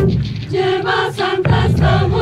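A choir singing a traditional Colombian Pacific song. The band drops out at the start so the voices are heard almost alone, and bass and drums come back in near the end.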